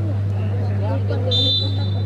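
Referee's whistle blown once in a short, shrill blast about 1.3 s in, signalling the penalty kick to be taken. It sounds over the chatter of crowd voices and a steady low hum.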